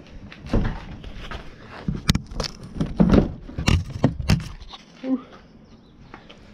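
A truck canopy's side window, in its frame, being worked loose and pulled out of its opening: a string of sharp knocks, clunks and rattles of frame and glass, densest in the middle.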